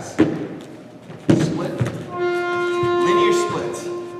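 Dull thumps as a foam roller and knee come down on an exercise mat, the loudest about a second in. About two seconds in, an interval timer sounds a steady buzzing tone for about two seconds: the signal to start the exercise.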